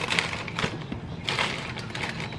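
Plastic bag of pre-cut cauliflower florets crinkling in a few bursts as it is shaken and tipped to let the florets tumble out.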